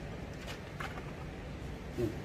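Two faint clicks about half a second apart as the folding electric scooter's seat is handled on its post, over a steady low background hum.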